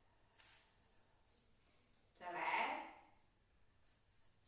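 A woman's voice counting "tre" (three) once, about two seconds in, against quiet room tone.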